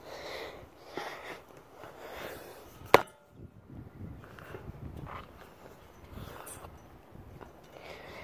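Faint rustling and scuffing of a child climbing a metal spiral climbing frame, with one sharp knock on the metal about three seconds in.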